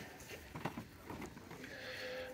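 Quiet store background noise with a few faint, soft clicks.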